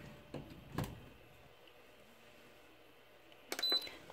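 A couple of faint clicks, then near the end a cluster of button presses and a short high beep from an Aroma digital rice cooker's control panel as a cooking function is selected.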